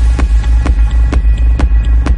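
Minimal techno: a heavy, steady bass under a kick drum at about two beats a second, with sustained synth tones and light percussion ticks between the beats.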